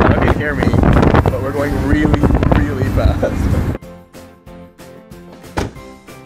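Wind blasting across the microphone on a moving motorboat, with voices in it, for nearly four seconds. It cuts off sharply, and background music takes over.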